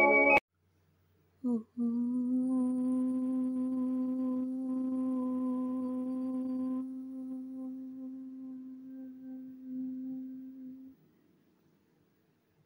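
One voice chanting a long, steady "Om" on a single pitch, held for about nine seconds. The open vowel gives way to a hummed "mmm" about halfway through, which fades out shortly before the end.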